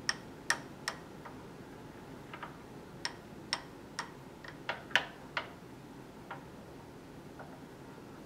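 A stirring rod clinking and tapping against a small glass dish while mixing a wet red pigment paste with binder. The clicks are irregular, about a dozen, thinning out after about five seconds.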